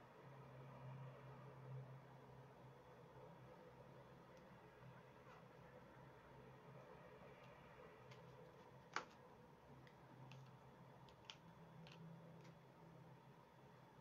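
Near silence: room tone with a faint steady low hum and a few small, faint clicks, the sharpest about nine seconds in.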